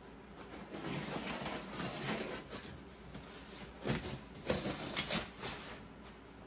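Plastic stretch wrap being cut open and pulled off a cardboard box: crinkling and rustling, with a run of sharp crackles in the last two seconds.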